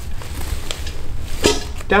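Bubble wrap crinkling and cardboard rustling as wrapped stainless-steel downpipes are handled in their shipping box, with a few light clicks.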